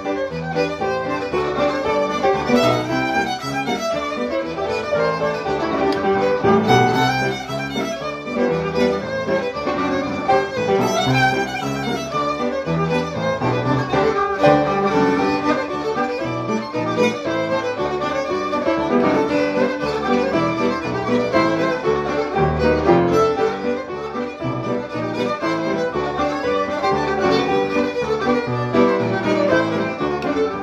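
Electric violin and upright piano playing a French Canadian reel together, the fiddle carrying the melody over piano accompaniment.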